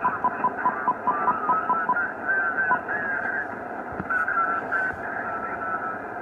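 Shortwave transceiver audio on 40 m lower sideband while the dial is tuned up toward 7.185 MHz: steady band hiss with a rapid train of short high beeps, about six a second, for the first two seconds. After that, garbled off-tune sideband voices warble in and out of pitch.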